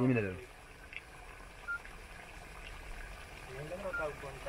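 A man's voice trails off at the start, then quiet background with a low steady hum and two brief faint beeps about two seconds apart; a voice starts again faintly near the end.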